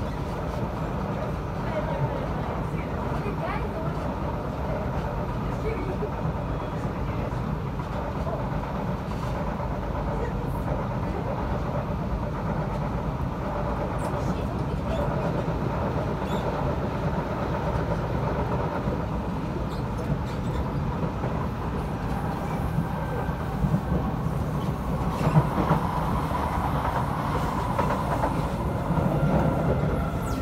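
Interior running noise of an SMRT C751B train at speed: a steady rumble of wheels on rail with light clatter. In the last several seconds a train passing on the adjacent track makes it louder, with a few sharp clacks.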